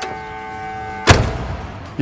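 1971 Oldsmobile 442's key-in-ignition warning buzzer sounding with the driver's door open, a steady buzz that is about the loudest one in history, warning that the key is left in the ignition. About a second in the door is shut with a loud thud and the buzzer stops.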